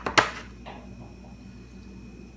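A quick click, then a sharp, loud knock about a fifth of a second in, followed by a faint tick and a low steady hum of room noise.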